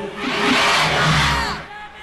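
Large concert crowd cheering and shouting, a loud swell of many voices for most of the first second and a half that then drops away near the end, with the band's music underneath.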